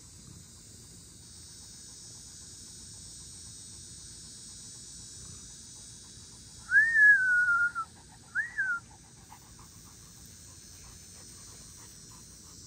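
A dog whines twice: a long high whine that falls in pitch, then a short rising-and-falling one, over a steady high buzz of insects.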